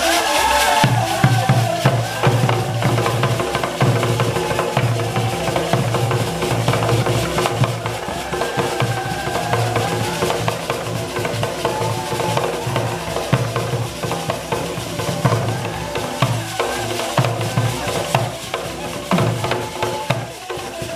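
Traditional Ugandan ensemble music: a large wooden log xylophone played by several men at once, with heavy hand drums coming in about a second in and driving a fast, steady beat.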